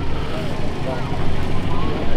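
Faint background chatter of voices over a steady low rumble.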